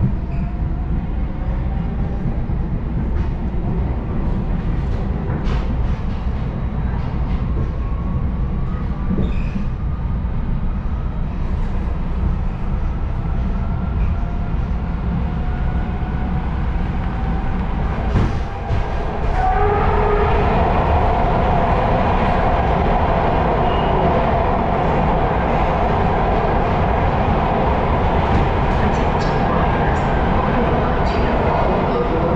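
MARTA rapid-transit train heard from inside the car: a steady low rumble of wheels on rail, with the motors' whine rising slowly in pitch as the train gathers speed out of the station. About two-thirds of the way through it turns suddenly louder and fuller as the train runs into a tunnel.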